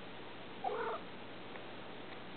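A domestic cat giving one short call, a little over half a second in, over a faint steady hiss.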